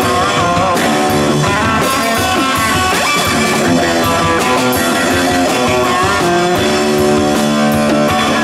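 Live rock music from a band: an amplified electric guitar playing over a drum kit with cymbals, loud and continuous, with some bent, sliding guitar notes.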